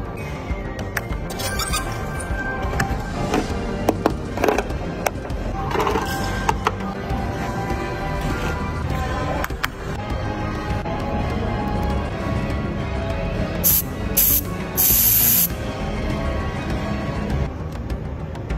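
Background music with a steady dense texture, with a few short loud bursts of hiss about three-quarters of the way through.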